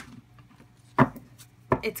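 Tarot cards handled on a table: a faint click at the start, then a sharp tap about a second in and another just before the end.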